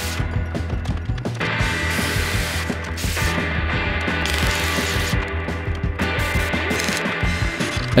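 Quick-cut run of metalworking sounds, an abrasive chop saw cutting steel tubing and then welding, under background music; the sound changes abruptly about a second and a half in, about three seconds in and about six seconds in.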